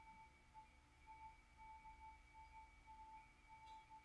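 Near silence: room tone with a faint, steady high-pitched hum that wavers slightly in level.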